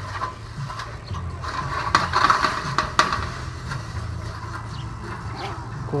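Handling noise from a swamp cooler's metal louvered pad panel and its aspen pad being worked loose by hand: a rustling scrape with sharp knocks about two and three seconds in.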